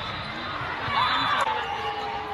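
Indoor volleyball game sounds in a gym: high squealing glides about a second in and a sharp hit about a second and a half in, over the echoing hall.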